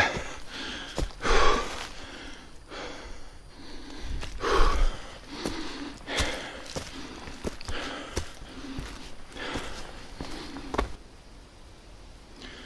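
A man breathing hard, heavy breaths about every second and a half, over footsteps rustling and crackling through dry fallen leaves on a forest path. He is out of breath from climbing steep stone steps. Steps and breathing die down about eleven seconds in.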